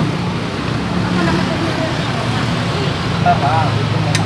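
Steady street ambience: continuous traffic noise with a low hum, and faint voices in the background.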